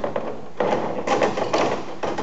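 Flaring tool's feed screw being wound down by its bar, pressing the flare bit into the end of a 3/16-inch steel brake line for the first stage of a double flare. A rough metal scraping and creaking starts about half a second in.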